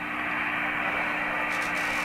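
Steady receiver hiss from a Yaesu FT-225RD 2 m transceiver's speaker on sideband, cut off above the voice range, with a low steady hum under it.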